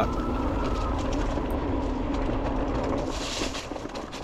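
Electric bike being ridden over gravel and grass: steady tyre and frame rumble with wind on the microphone, and a faint steady whine that fades out about a second in. The rumble eases off near the end as the bike slows.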